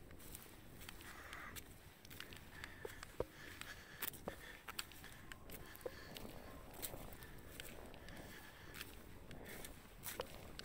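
Faint footsteps through grass and stubble, with scattered small clicks and rustles.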